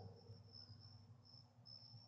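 Faint cricket trilling: one high, steady note broken by short gaps.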